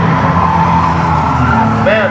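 Race car engines running steadily as the cars pass on the oval's front straight.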